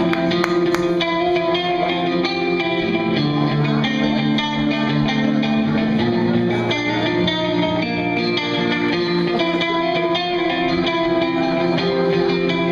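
A live band's electric guitars playing the opening of a rock song, sustained chords ringing out and changing every few seconds.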